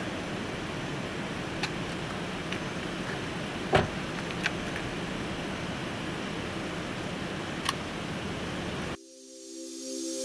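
Steady outdoor background noise beside a parked car, broken by a few light clicks and one sharper knock about four seconds in. About nine seconds in it cuts off abruptly and a rising swell begins, leading into a music intro.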